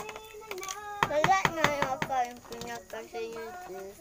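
A young child's voice, vocalizing in a sing-song way without clear words, with some notes held. A few short clicks come about a second in.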